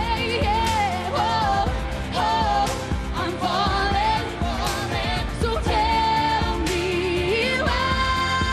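Pop song with a female lead singer holding long, bending notes over a backing with drums keeping a steady beat.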